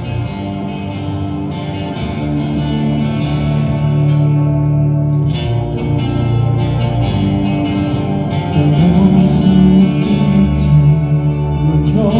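Live concert music over a hall's sound system: a slow instrumental intro of held chords. About two-thirds of the way through the music grows louder and a male singer's voice comes in.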